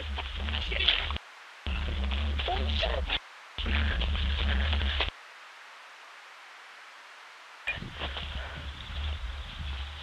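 Handheld camcorder microphone rumbling as the camera is carried at a run, with voices mixed in. The sound cuts off abruptly three times, the last time into about two and a half seconds of faint hiss while the picture breaks up into static.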